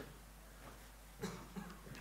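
Quiet room tone with one brief, soft throat-clearing sound a little over a second in.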